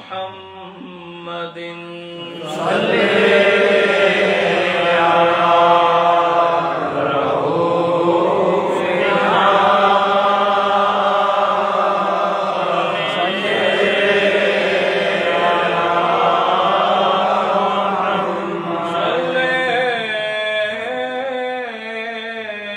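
A man's voice chanting a devotional recitation in long, held melodic lines. It becomes louder and fuller about two and a half seconds in.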